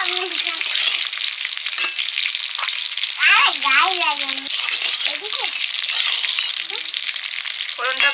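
Cumin seeds and dried red chillies sizzling in hot oil in a large kadai, with a metal spatula stirring through them. A voice sounds briefly in the background about three seconds in.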